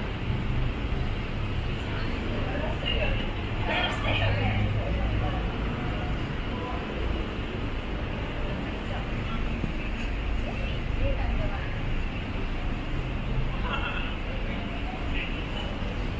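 Street ambience: steady road-traffic rumble, with brief snatches of passers-by talking a few seconds in and again near the end.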